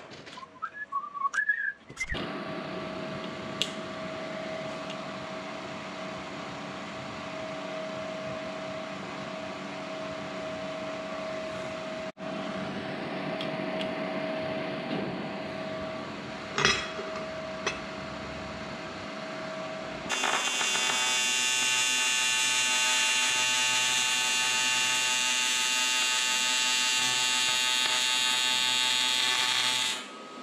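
A small metal lathe running with a steady whine and a few sharp clicks. About two-thirds of the way through, an electric welding arc strikes on the aluminium transmission casting and gives a louder, steady buzz.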